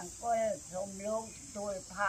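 A woman's voice recites in a level, chant-like tone, the pitch hardly rising or falling, over a steady high insect buzz.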